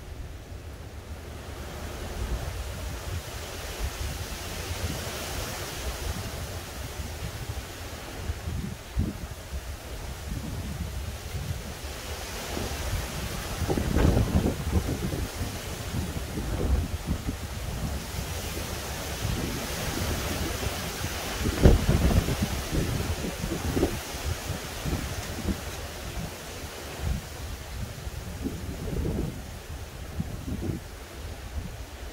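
Gusty hurricane wind from Hurricane Ian rushing through the trees, with low buffeting on the microphone. It rises and falls in gusts, and the strongest come about 14 and 22 seconds in.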